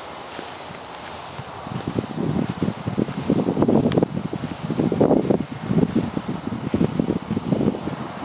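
Wind buffeting a handheld camcorder's microphone, mixed with footsteps through grass, in irregular rushing gusts that start about two seconds in.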